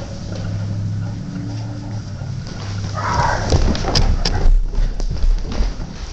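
A low steady hum for about the first half, then a short rustle and a run of quick knocks and thumps: a kitten's paws scampering across a hardwood floor.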